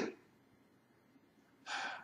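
A man's short intake of breath near the end, after a pause.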